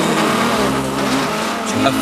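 A grid of 1950s sports racing car engines revving hard as the flag drops for a race start, with some tyre squeal as the cars pull away.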